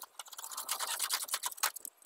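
Old flaking paint being scraped by hand off the weathered wooden planks of a tractor trailer body, in quick, rough, repeated strokes.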